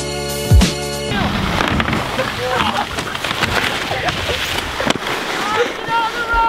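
Music with a beat for about the first second, then it cuts out to a steady rushing noise of skis sliding over packed snow with wind on the microphone. Short voices break in now and then, most near the end.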